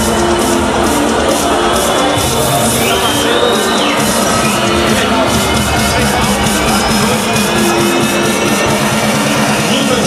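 Loud electronic dance music with a steady beat.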